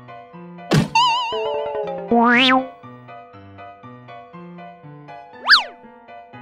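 Cartoon sound effects over cheerful children's background music: a sharp downward swoop just under a second in and a warbling tone, then a loud, wobbling rising glide about two seconds in, and a quick up-and-down zip near the end.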